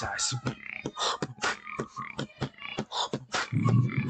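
Beatboxing: a fast run of mouth-made snare and hi-hat clicks, about four or five a second, with a loud low buzzing bass note near the end.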